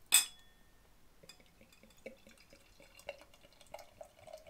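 A sharp glass clink with a short ring about a quarter second in, as the bottle touches the glass. Then stout pours from the bottle into the tasting glass, a faint trickle with small ticks from the liquid and foam.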